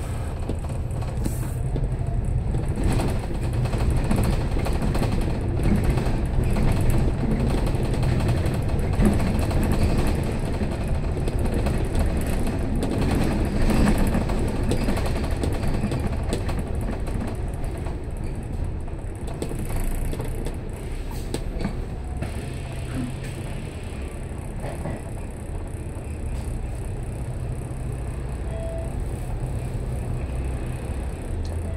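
Cabin noise on a double-decker bus: engine running and road rumble as it drives, louder through the first half and easing off in the second half as the bus slows toward a stop.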